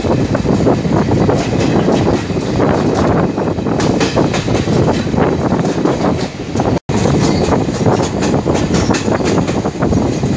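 Godavari Express passenger train running, heard from on board, with a continuous dense clatter of wheels on the rails. The sound drops out for an instant about seven seconds in.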